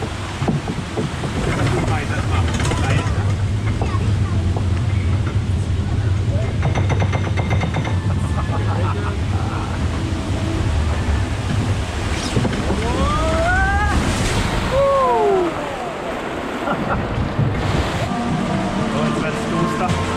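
A bathtub-boat water ride running: a steady low rumble mixed with rushing water as the tub is carried up a belt-conveyor ramp, with rapid clattering about a third of the way in. Two falling squeals come about two-thirds of the way in.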